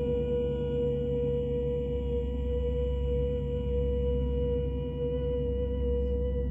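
A single high musical note, held steady and unbroken with a clean ring of overtones, over the low hum of a large gong still sounding beneath it.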